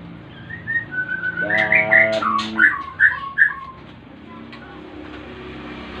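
A caged songbird singing a short phrase of clear whistled notes, ending in a few quick separate notes. The song stops about three and a half seconds in.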